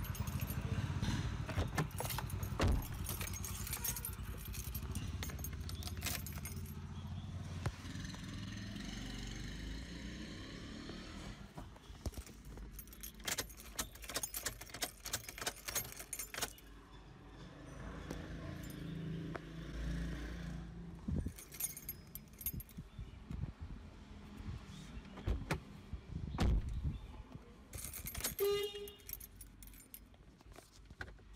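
Car keys jangling on their ring while the ignition key is turned on and off over and over in a Toyota Fortuner's ignition lock, with many sharp clicks that come thickest in two clusters, mid-way and near the end. The repeated on-off cycling is the sequence that puts the car into remote-key programming mode.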